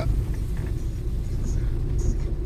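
A car driving along city streets: a steady low rumble of engine and road noise.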